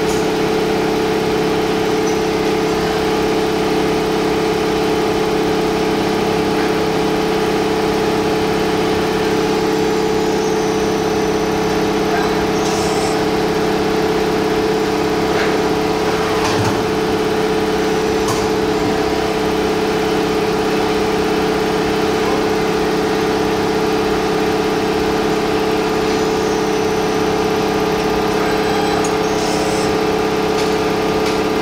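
2018 Doosan Puma 2600 CNC lathe running with a steady hum at an even level, with a few short clicks as the tool turret indexes.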